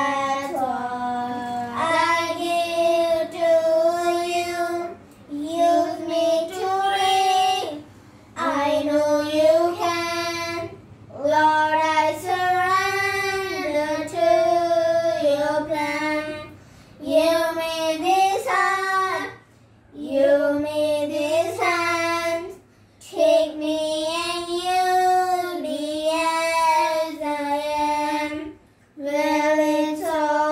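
Two children, a girl and a boy, singing a Christian worship song together unaccompanied, in phrases a few seconds long with short breaths between them.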